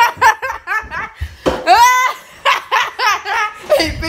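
A boy laughing hard in quick bursts, with one longer drawn-out cry about one and a half seconds in.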